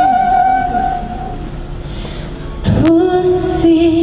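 Solo flute playing a slow melody. A high held note fades out about a second in, and after a short pause a lower note comes in with a breathy attack near the end and is held.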